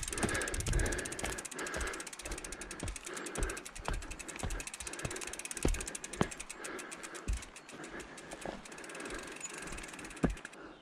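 Mountain bike's rear freehub ratcheting in a rapid, even run of clicks as the bike coasts downhill. Tyre rumble runs underneath, with scattered thuds as the bike goes over bumps in the dirt trail.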